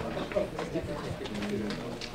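Low murmured voices and a short hummed sound in a meeting room, with light rustling and ticks of papers and a coat being handled.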